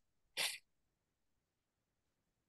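A single short, breathy puff of air from a person close to the microphone, about half a second in; the line is otherwise silent.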